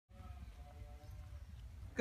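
Tennessee Walking Horse being ridden at a walk: faint hoofbeats over a steady low rumble.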